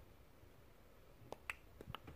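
Near silence with a few faint, sharp clicks in the second half, three or four of them close together.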